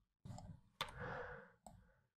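Two computer mouse clicks, about a second in and near the end, over faint room noise.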